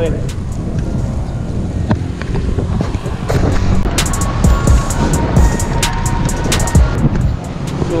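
Wind rumbling on an action camera's microphone while riding a bicycle along a road in traffic. In the second half come a run of sharp clicks and a short steady tone.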